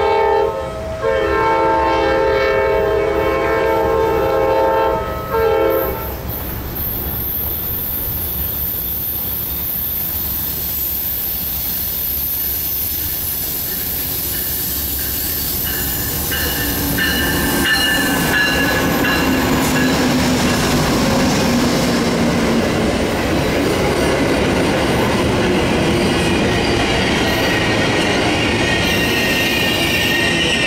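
Amtrak train's GE Genesis diesel locomotives sounding the horn for the first several seconds: the end of one blast, then a long blast and a short one. The train then rolls in and passes, the locomotive and cars rumbling and the wheels squealing as it slows at the platform.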